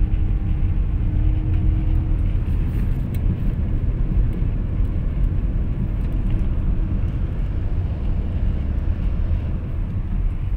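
Steady low rumble of a moving car heard from inside its cabin: engine and tyre road noise while driving.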